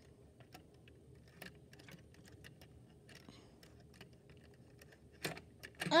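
Scattered light plastic clicks and taps of an HO scale model caboose's wheels being worked onto a length of HO track by hand, with a sharper knock near the end.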